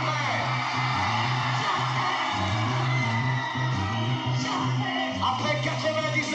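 A live rock band plays a driving groove over a repeating, stepping bass line. A voice calls out over it with sliding shouts, at the start and again about two-thirds of the way through.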